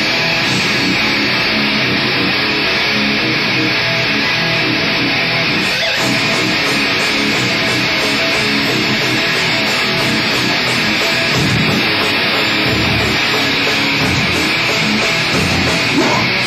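Live rock band playing loud, with electric guitar and drums, the sound dense and unbroken.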